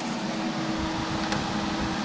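Cooling fans of a running desktop computer in an acrylic case: a steady rush of air with a steady low hum under it.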